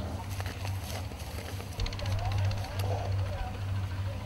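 A low, steady engine hum runs throughout, with faint children's voices in the distance and a few light clicks in the middle.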